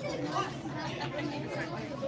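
Chatter of several people talking at once, no single voice standing out.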